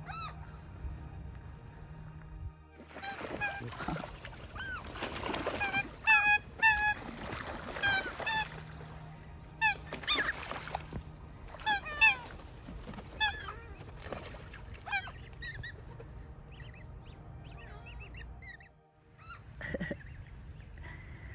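A crowd of birds at a feeding spot calling over food: a rapid run of short, repeated, loud calls, thickest from about three to fifteen seconds in, over a rushing noise, then thinning out.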